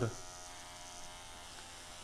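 Electric hair clipper with a number 4 guard buzzing steadily and faintly as it is run through the hair on top of the head.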